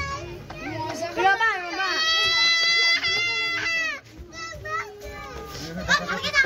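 Children's and adults' voices talking and shouting close by. In the middle, one high call is held steady for about two seconds and is the loudest sound.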